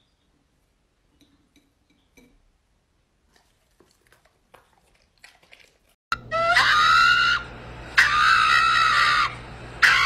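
A pug giving three long, loud, high-pitched cries, starting about six seconds in. Before them, only a few faint clinks of a knife on a plate.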